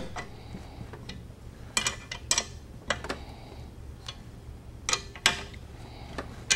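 A small wrench clicking against the nuts and steel of a chair swivel plate and ring as the nuts are checked for tightness: about six short, sharp metallic clicks at uneven intervals.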